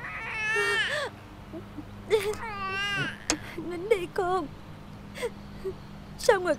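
A feverish infant crying in high, wavering wails: two long cries about two seconds apart, then shorter ones around four seconds in.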